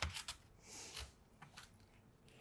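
Faint food-handling sounds at a kitchen counter: a light click at the start, a soft rubbing hiss about halfway through, and a small knock just after.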